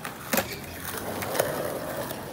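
Skateboard wheels rolling on concrete, the steady roll starting about a second in as the rider pushes off. A single sharp knock comes about a third of a second in.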